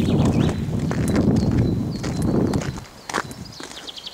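Footsteps of a person walking on wet ground while holding the camera, under a heavy low rumble of handling or wind on the microphone that drops away about three seconds in. A few short high chirps come near the end.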